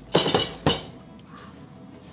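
Stainless steel spice box and its small steel cups being handled: a quick cluster of sharp metal clinks, then one more, each with a short ring.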